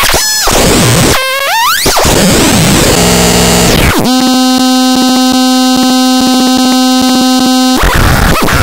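Harsh digital synthesizer noise from a VCV Rack patch, a virtual Instruo Cš-L oscillator driving a Plaits macro oscillator, loud throughout. A little after a second in, a pitched tone sweeps quickly upward. About halfway through, the sound locks into a steady, buzzy held tone with fast clicks, then cuts off just before the end and gives way to noise again.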